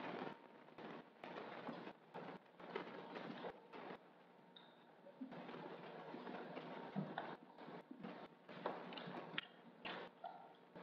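Soft footsteps, shuffling and rustling of people moving slowly through a quiet room, with scattered small clicks and knocks.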